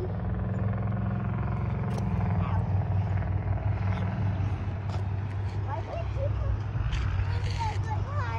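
A motor vehicle engine running steadily, a low hum that holds an even pitch, with brief bits of children's voices over it.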